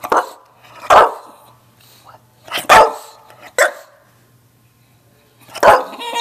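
English bulldog barking: about five short, sharp barks a second or two apart, with a longer pause before the last.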